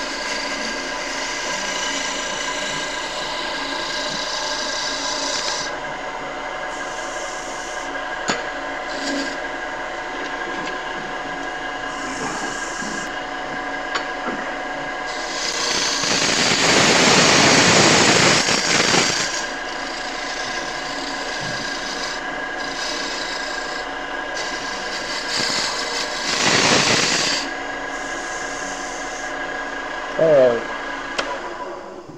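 Wood lathe running with a steady hum while a handheld turning tool cuts a spinning wooden rolling-pin blank with a continuous rasping scrape. The cutting grows loudest in one long pass of about four seconds past the middle and a shorter pass near the end.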